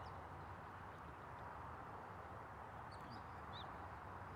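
Quiet open-air background hiss with a few faint, short, high bird chirps, one right at the start and a couple about three seconds in.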